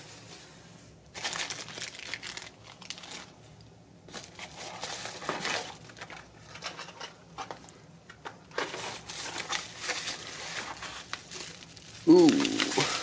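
Plastic packing material and bubble wrap crinkling and rustling in irregular bursts as they are handled and pulled out of a cardboard box.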